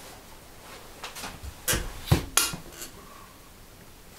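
Hands being wiped off on a cloth: a handful of short rubbing strokes with a soft thump, bunched between about one and three seconds in.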